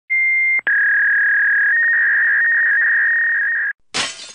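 A steady high electronic tone: a short beep, a brief break, then a long, slightly lower beep lasting about three seconds that steps up a little in pitch partway through and cuts off suddenly. A short burst of hiss follows right at the end.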